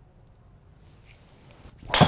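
Golf driver swing: near the very end a short rising swish, then the loud, sharp crack of the driver head striking a Titleist Pro V1 RCT golf ball, with a brief metallic ring.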